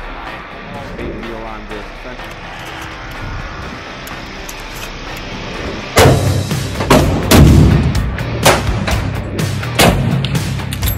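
Background music. From about six seconds in, a string of loud, irregularly spaced gunshots cuts in over it.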